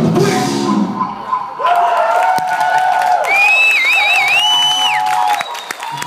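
A live rock band with drum kit, electric guitar and violin plays its last bars and stops about a second and a half in. The audience then cheers and shouts, with a high wavering whistle in the middle.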